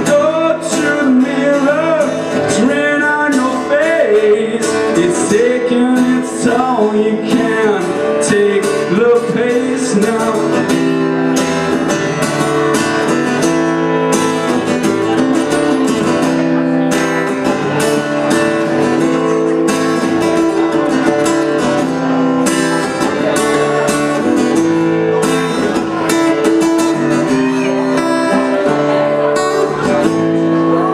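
Acoustic guitar strummed steadily, with a sung melody over it for the first several seconds; after that the guitar plays on alone.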